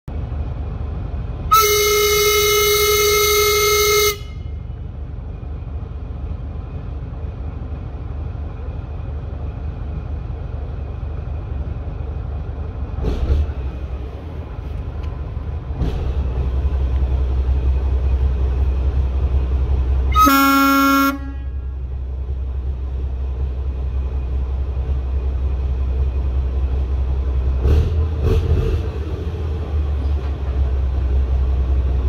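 Tu2 narrow-gauge diesel locomotive running with a steady low engine rumble and sounding its horn twice: a long blast of about two and a half seconds near the start, and a shorter blast with a lower tone about twenty seconds in, its departure signal. The engine rumble grows louder from about sixteen seconds in as the train gets under way, with a few faint clanks.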